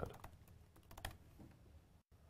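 Faint typing on a laptop keyboard: a short run of light key clicks.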